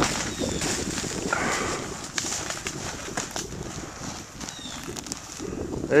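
Snow crunching and the vinyl of an inflatable snow tube scuffing and rubbing as it is dragged across the snow and lifted, with scattered small knocks and a couple of faint short squeaks.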